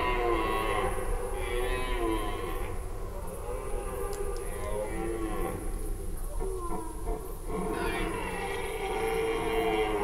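Red deer stags calling in the rut: hoarse, drawn-out calls with falling pitch, several following and overlapping one another. These are the stags' chasing calls (Sprengruf), given while driving off rivals or hinds.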